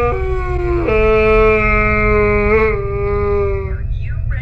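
A man wailing in loud, exaggerated mock crying: long, drawn-out held cries, first a short one sliding down in pitch, then a longer, lower steady one that breaks off near the end.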